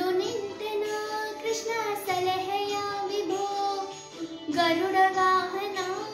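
A girl singing a devotional song to Krishna, solo voice, holding long notes with small wavering ornaments.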